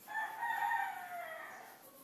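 A rooster crowing once, a single long call of about a second and a half whose pitch drops toward the end.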